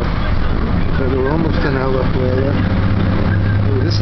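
Bus engine and road noise heard from inside the cabin as the bus drives along: a steady low drone that gets louder about halfway through.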